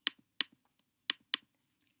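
Four sharp computer mouse clicks in two quick pairs, with near silence between.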